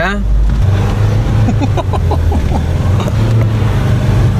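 Car engine pulling hard up a steep climb, a steady deep drone heard from inside the cabin, with brief voices about halfway through.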